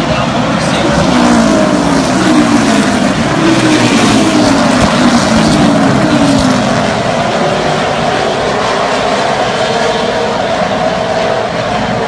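Super late model stock car V8 engines running at low speed as the field circles under caution, their notes rising and falling as cars pass.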